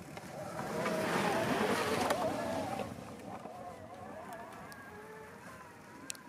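Fat-tire bicycle passing close through snow: the tyre noise swells about a second in, then fades as the bike rides away, with a wavering hum under it.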